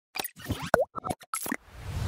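Cartoon-style pop sound effects for an animated logo outro: a quick run of about six short pops with a short rising slide in pitch near the middle. A whoosh swells up near the end.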